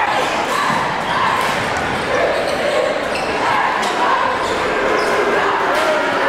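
A basketball dribbled on a hardwood gym floor, a few sharp bounces over steady crowd chatter that echoes in the gymnasium.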